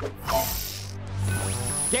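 Cartoon digital glitch sound effects over a low music drone: a noisy burst at the start, then a high steady whine, as a virtual-reality avatar glitches.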